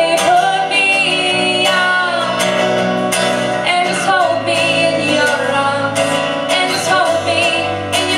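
Live band music: a woman singing lead over two acoustic guitars and an electric bass guitar.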